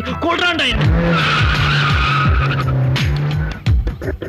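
A car's tyres squealing for about a second over its running engine, after a brief spoken word at the start.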